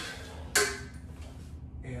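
A barefoot step forward on a wooden floor and a sidesword cut, with one sharp sound about half a second in that dies away quickly.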